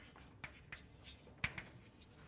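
Chalk writing on a blackboard: faint scratching broken by a few short taps of the chalk, the loudest about one and a half seconds in.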